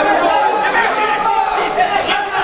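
Several people talking at once: steady, overlapping chatter of spectators close to the microphone, with no single clear voice.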